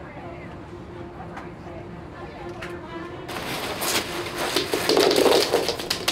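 Nylon backpack being lifted and handled, a rustling, crinkling noise that starts about three seconds in and grows louder toward the end. A faint steady hum lies under the quieter first half.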